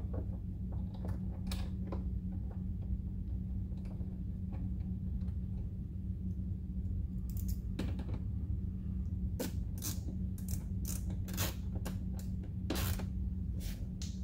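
Light clicking of a hand ratchet with an 8 mm socket driving an OEM screw that holds a mud-flap bracket to the car's side skirt. The clicks are sparse at first, then come quickly at about three a second through the second half as the screw is brought snug, over a steady low hum.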